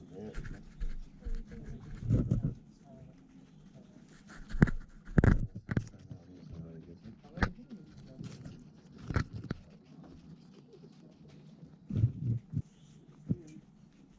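Guinea pigs munching apple pieces close to the microphone, with irregular sharp knocks and rustles as their heads and fur bump against the camera.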